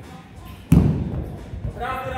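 A heavy kettlebell dropped onto a rubber gym floor: one loud thud about two-thirds of a second in.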